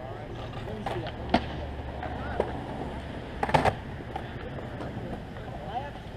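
Skateboard clacks and knocks on concrete: a sharp one about a second and a half in and a louder cluster about three and a half seconds in, over a low rumble.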